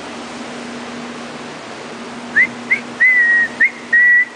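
A person whistling, starting about two seconds in: two short rising chirps, a longer held note that dips slightly, another chirp, then a held note. A steady hum and hiss run underneath.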